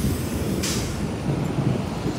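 Low rolling rumble of distant thunder, mixed with city street traffic, with a short hiss about half a second in.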